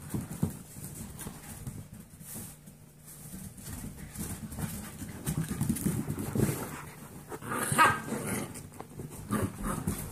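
Seven-week-old golden retriever mix puppies playing and scuffling, with scattered small knocks. About eight seconds in comes a short puppy vocalisation, the loudest sound here, and a smaller one follows just before the end.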